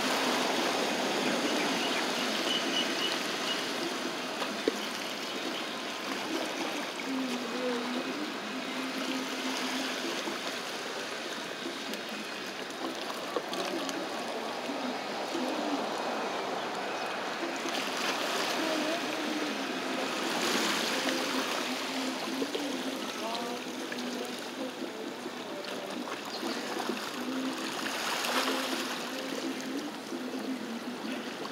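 Small waves washing against lava rocks at the foot of a sea wall: a steady watery rush that surges louder now and then, most strongly near the end.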